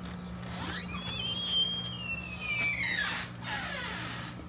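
Door hinges creaking as an exterior door is pushed open: one long squeal that rises in pitch, holds, then slides back down over about three seconds. A steady low hum runs underneath.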